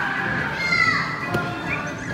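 Children playing and calling out, with a child's high voice rising and falling about halfway through, over background music.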